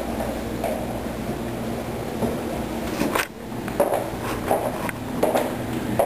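A steady low hum that stops about three seconds in with a sharp knock, followed by quieter room noise with a few short muffled sounds.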